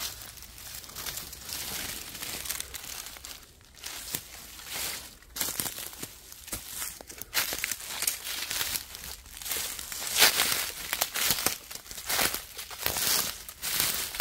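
Footsteps through dry fallen leaves and pine needles on a forest floor, an irregular run of crackling, rustling steps.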